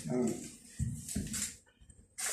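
A short voice-like sound at the start, then a few dull low knocks and faint murmur in a small room, fading almost to quiet near the end.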